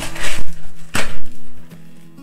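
Crinkling and rustling of a thin white wrapping sheet as the wrapped humidifier unit is lifted and handled, in two loud bursts, about a quarter second in and about a second in. Background music with steady tones plays underneath.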